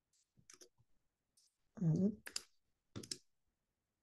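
Scattered clicks of keys being pressed on a computer keyboard as a short word is typed. A brief voiced murmur about two seconds in is the loudest sound.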